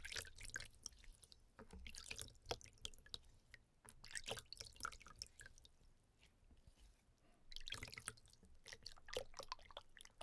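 Hands washed under a running tap over a plastic basin: irregular water splashes and drips, and wet hands rubbing and sloshing in the water, close-miked. There is a quieter spell past the middle, then busier splashing near the end, with a few low thuds of the microphone being knocked.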